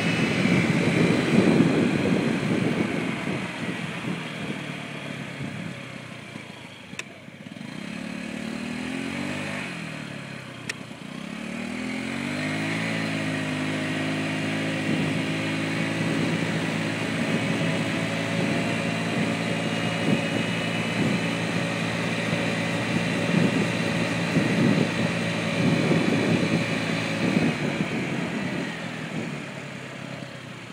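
Honda scooter engine running under way, with wind buffeting the microphone. The engine note falls about eight seconds in as the scooter slows, climbs again from about twelve seconds as it speeds up, then holds steady.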